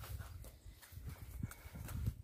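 Footsteps of a person walking, heard as uneven low thuds, with a couple of sharper clicks in the second half.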